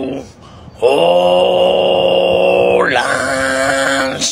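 A man's long, drawn-out moan held at a steady pitch, starting just under a second in after a short pause; after about two seconds it slides in pitch into a second held note.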